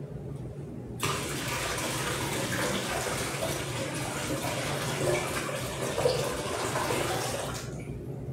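Water poured steadily from a jug into a glass container, starting abruptly about a second in and stopping shortly before the end.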